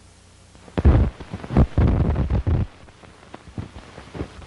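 Film soundtrack noise over the countdown leader: a click at the start, then about two seconds of loud crackling and thumping with a low rumble, thinning to scattered crackles.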